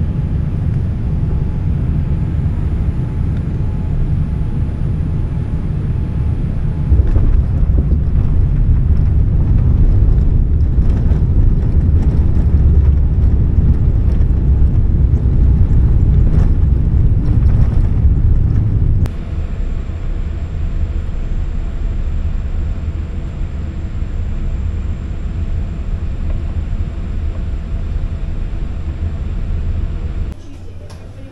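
Jet airliner cabin noise at a window seat beside the wing-mounted engine as the plane rolls along the ground: a loud, steady, deep rumble. It steps up suddenly about seven seconds in and drops abruptly at about two-thirds of the way through.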